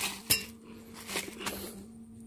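A few light, sharp metallic clicks and clinks spaced irregularly over a faint steady hum.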